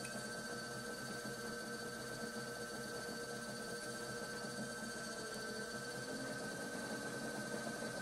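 Electric pottery wheel spinning at speed: a faint, steady motor hum with a thin high whine.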